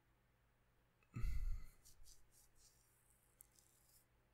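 A man sighing into a close microphone about a second in, the breath hitting the mic, followed by a few faint clicks and rustles.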